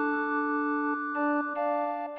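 Six-part recorder consort playing a polyphonic fantasia: several steady held notes overlap, a low note sustains throughout, and new notes enter in the upper parts about a second in.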